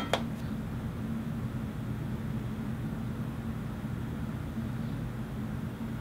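Steady low electrical or mechanical hum with a faint hiss underneath, the room's background sound, with one brief click just after the start.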